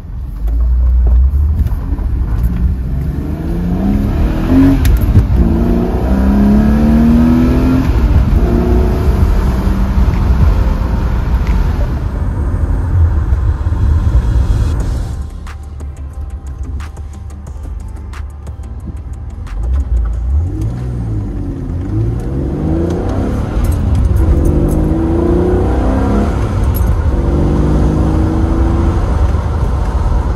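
BMW E83 X3 heard from inside the cabin, accelerating through the gears of its manual gearbox: the engine note rises in pitch, breaks off at each shift and rises again. There are two spells of acceleration, with a quieter stretch of steady cruising between them in the middle.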